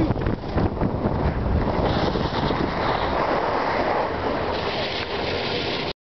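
Wind rushing over the microphone of a camera carried by a downhill skier, a steady noisy rush.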